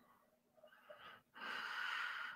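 A person breathing noisily close to a microphone: a faint breathy huff about a second in, then a louder, longer wheezy breath from about one and a half seconds in.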